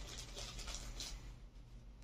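Faint rustling and handling noises from items being moved about in a hard-shell guitar case's accessory compartment, mostly in the first second, over a low steady hum.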